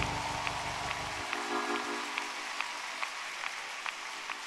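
Congregation applauding, a dense patter of many hands clapping, over music with held chords. The music's bass drops out about a second in.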